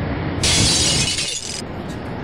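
A sudden burst of crashing, shattering noise, an added sound effect, lasting about a second and cutting off abruptly.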